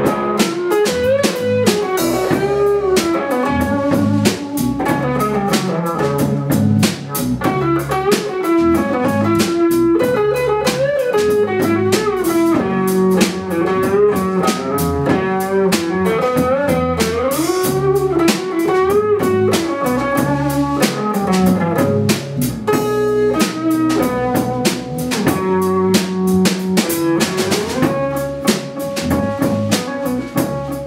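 Live band playing an upbeat rhythm-and-blues number: electric guitar over a drum kit, with melodic lines that bend in pitch.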